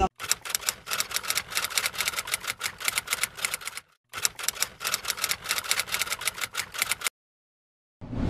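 Typewriter-style typing sound effect: rapid key clicks, about seven a second, with a brief break near the middle, stopping abruptly about a second before the end.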